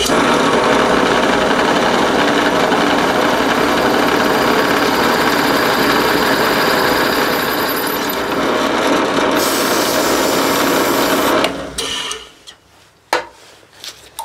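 A machine-driven 27/64-inch twist drill cutting a tap-drill hole for a 1/2-13 thread into a cast iron cylinder. It runs loud and steady, with a hissing cutting noise, then stops about eleven and a half seconds in.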